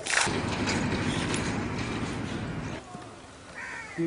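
Pole-lever water pump being worked, with dense rattling, splashing noise that stops after almost three seconds. A short high call comes near the end.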